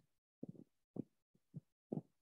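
Near silence broken by four faint, short, low thumps, about half a second apart.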